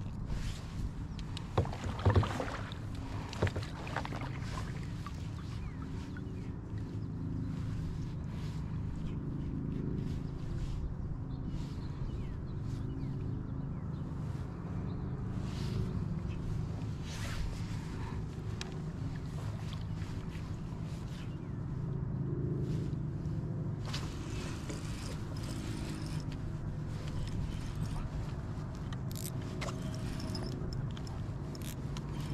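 Wind on the microphone and water lapping against a kayak hull, a steady low rumble, with a few sharp knocks and clatters about two seconds in, the loudest sounds here.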